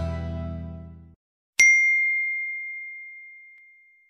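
The last chord of the harmonica instrumental dies away and stops about a second in. Then a single bright bell ding, the subscribe-button notification sound effect, strikes once and rings out slowly.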